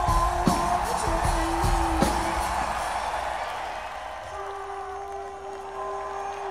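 Live rock band playing an instrumental passage of a song: a steady drum beat for about two seconds, then the drums drop out, leaving sustained chords with one note held from about four seconds in.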